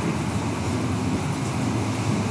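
Steady, even background noise with a faint low hum, unchanging through a short pause in speech.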